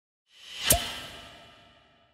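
Logo-intro sound effect: a whoosh swelling up to a sharp hit well under a second in, followed by a ringing tail that slowly fades away.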